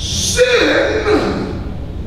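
A man's sharp intake of breath into a microphone, followed by a drawn-out vocal phrase that falls in pitch.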